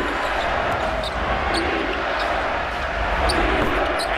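Basketball game court sound in an arena: a steady crowd din with the ball being dribbled on the hardwood and a few short, high sneaker squeaks scattered through it.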